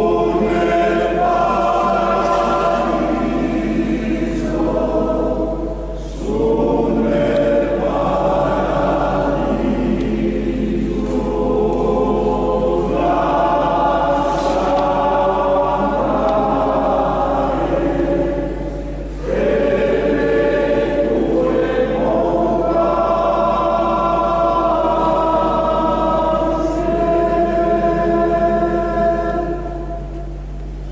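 Alpine male-voice choir singing unaccompanied in a church, in long sustained phrases with two short breaks, about six and nineteen seconds in.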